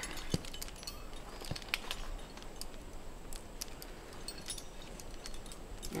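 Carabiners and climbing hardware on a harness gear rack clinking lightly against each other: scattered small metallic clicks.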